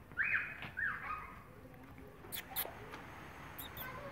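Two short, high, squeaky animal cries in quick succession within about the first second, each rising and then falling away, followed by a few faint light clicks.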